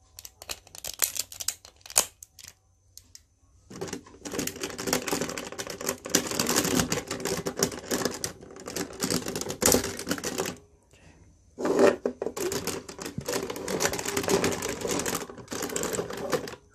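Hard plastic parts of a DX Goseiger combining robot toy clicking and rattling as the pieces are pulled apart and snapped into place. A few scattered clicks come first, then a long run of dense clattering, a short pause, and more clattering.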